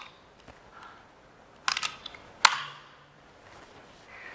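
Laptop keyboard keystrokes: a short cluster of taps about one and three-quarter seconds in, then one sharper clack half a second later that rings briefly in the room.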